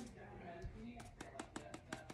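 Faint, low speech in a small room. From about a second in comes a run of quick, light clicks, about six a second.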